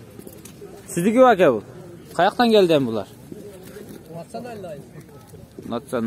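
Sheep bleating: two loud bleats about one and two seconds in that fall in pitch with a quaver, then fainter bleats later.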